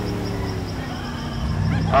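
Animal sound effects from the Jungle Cruise ride, heard faintly as dog-like yipping over a steady low rumble.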